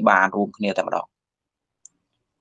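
A man speaking Khmer for about a second, then silence broken only by a faint short click near the end.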